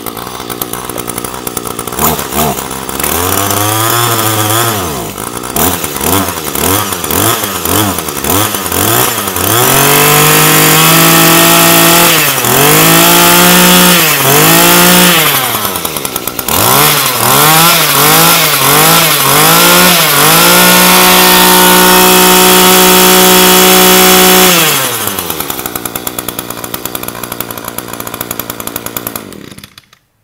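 Small Echo two-stroke brush-cutter engine, just pull-started. It idles, then is revved over and over in quick throttle blips, with two longer holds at high revs, and the throttle response is very sharp. It drops back to idle and is shut off just before the end.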